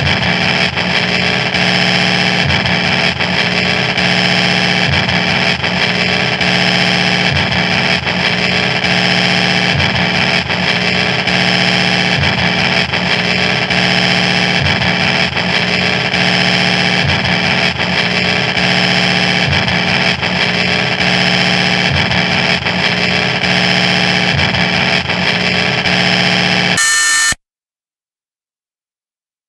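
Harsh, heavily distorted noise drone: a steady wall of hiss with several held tones layered in it, staying the same throughout. It cuts off abruptly into silence about a second before the end.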